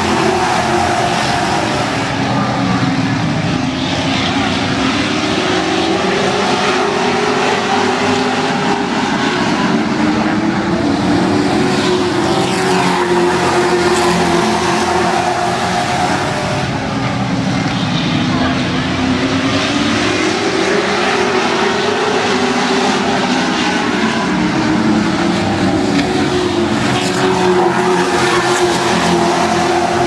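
A pack of late model stock cars racing around an oval. Their V8 engines run loudly and continuously, the pitch rising and falling in long sweeps as the cars lap the track.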